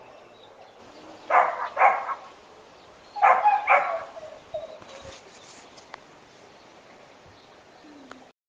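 A caged dog whimpering faintly, then barking four times in two quick pairs, then whimpering again. It is a dog kept shut in a cage all day and barking constantly.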